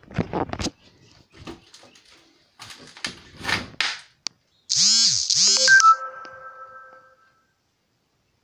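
Scattered knocks and rustles of handling in a small room. Then, about five seconds in, the loudest sound: a short electronic jingle of two swooping notes, ending in a held chime that fades out after about two seconds, like a phone notification tone.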